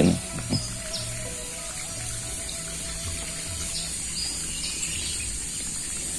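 Rural outdoor ambience: scattered short bird chirps over a steady high-pitched hiss, with faint background music holding long notes during the first few seconds.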